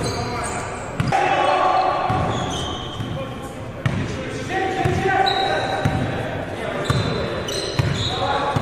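A basketball bouncing a few times on a hardwood gym floor as players dribble up the court, with players' voices and other court sounds ringing in a large hall.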